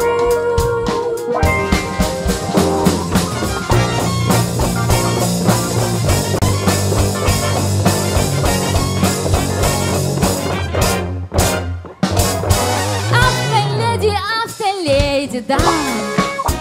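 Live pop band playing an instrumental break: trombone, trumpet and saxophone over electric guitar, bass and drum kit. The band stops briefly about eleven seconds in, then picks up again.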